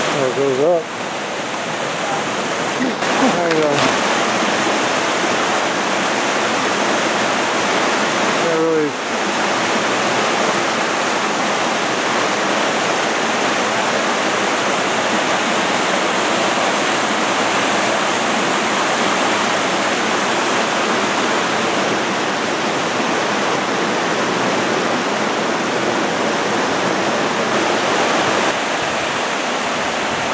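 Creek water rushing steadily over boulders in a series of small cascades.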